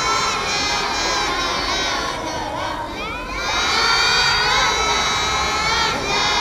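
A group of children singing together in unison, with long held notes and a brief dip near the middle.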